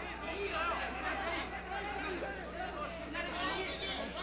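Boxing arena crowd of many voices shouting and chattering, over a steady low hum.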